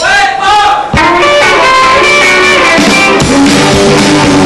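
Live country-rock band starting a song: a few gliding, bending notes in the first second, then the full band with electric guitars, bass and drum kit comes in on a sharp hit about a second in and plays on steadily.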